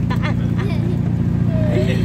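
Steady engine and road drone heard from inside the cab of a small motorhome driving on a wet road, with voices talking over it.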